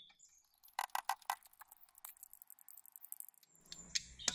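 Car jack being wound down with its hand crank: a fast run of sharp metallic clicks, about eight a second, from about a second in until near the end. A bird chirps once at the start.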